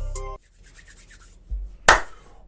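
Intro music ends abruptly about a third of a second in. Then come hands rubbing together, a soft thump, and one sharp hand clap near the end.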